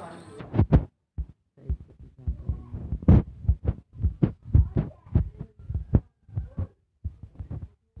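A rapid series of dull thumps, about two a second, with silent gaps between them: fingertip taps on a smartphone's touchscreen as accounts are followed one after another.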